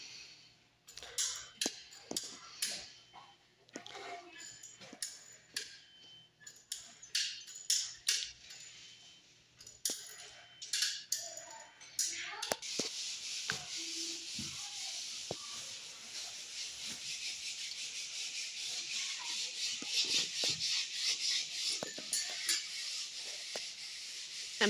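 Caulking work on a wooden window frame: scattered clicks and light scraping from a caulking gun and hands on the frame. About halfway a steady high rasping hiss starts and grows louder.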